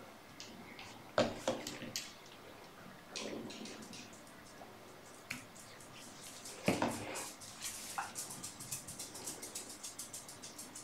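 Faint small clicks and rustles of hands working at a fly-tying vise, with thread, bobbin and a cock hackle feather being handled on the hook, and a few sharper ticks. Near the end the ticks come quicker as the hackle starts to be wrapped.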